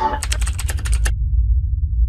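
Computer keyboard typing sound effect: a rapid run of about a dozen keystroke clicks over the first second, then a steady deep rumble.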